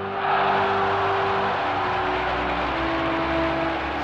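A huge outdoor crowd cheering and applauding in one dense, steady wall of noise that swells up about a quarter second in. It answers the line 'Ich bin ein Berliner'. Faint steady tones sound underneath.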